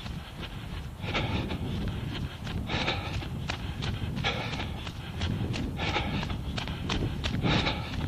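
A runner's steady rhythmic footfalls on a snowy path, with hard breathing in bursts about every second and a half, over a low rumble of wind and movement on the body-worn camera's microphone.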